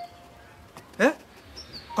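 A single short man's 'eh?' about a second in, sharply rising in pitch, against an otherwise quiet background.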